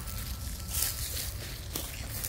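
Footsteps through ground cover and dry leaf litter, soft rustles with a short click near the end, over a low rumble of wind on the phone's microphone.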